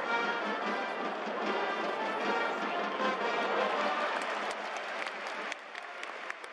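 Stadium cheering music with brass and a steady beat, over crowd noise; it drops away about five and a half seconds in.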